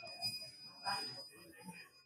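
Faint, indistinct talking with a steady high-pitched tone sounding under it.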